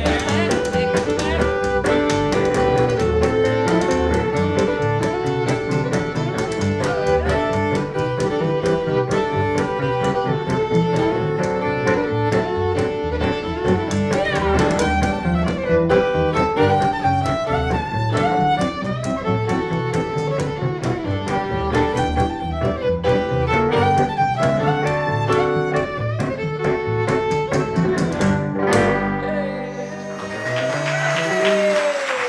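Live western swing trio playing an instrumental passage: fiddle carrying the lead over archtop guitar rhythm and plucked upright bass. The tune ends near the end.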